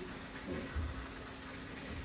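Quiet room tone with a faint steady hum, in a pause between spoken phrases.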